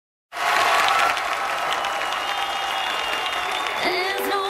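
Studio audience applauding, cutting in suddenly just after the start.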